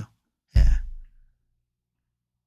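A man's short sigh: one breath pushed out hard into the microphone about half a second in, fading within half a second.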